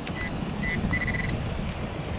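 A metal detector's electronic tone at one fixed high pitch, sounding as short beeps and then a longer note about a second in, over a coin target in wet sand. A steady low background noise runs underneath.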